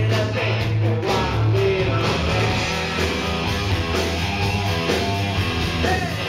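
A live rock trio playing loudly and without a break: electric bass, electric guitar and a drum kit, heard from within the audience in a small club.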